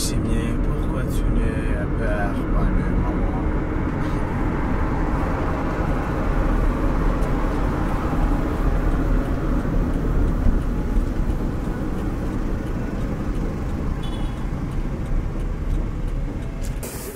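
Steady road and engine noise heard inside the cabin of a moving car.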